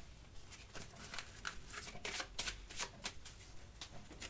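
A deck of cards being shuffled by hand: a faint run of short, irregular card clicks.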